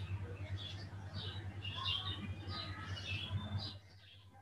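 Faint chirping of small birds, short high calls about three a second, over a steady low electrical hum; the sound cuts off suddenly just before the end.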